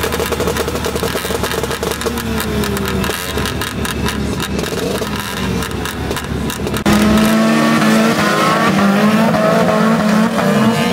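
Crash-car race car engines running at idle, then about seven seconds in a sudden switch to louder engines revving up and down as several cars race.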